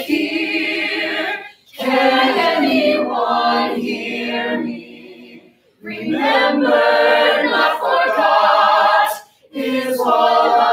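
A small ensemble of musical-theatre singers singing together in harmony, in three phrases with short breaks between them.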